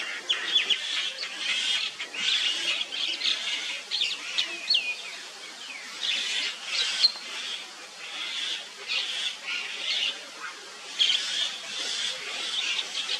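High-pitched animal calls: short chirps and squeaks with quick pitch sweeps, coming in bursts about every second or so.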